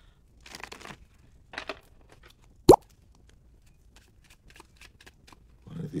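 A deck of playing cards being shuffled and dealt: two short rustling shuffles, a sharp snap about two and a half seconds in that is the loudest sound, then a run of light ticks as cards are laid out.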